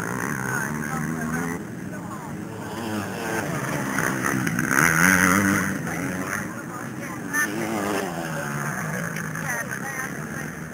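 Several motocross bikes' engines revving up and down as they race round a dirt track, their pitch wavering and overlapping, loudest about five seconds in as a bike comes nearest.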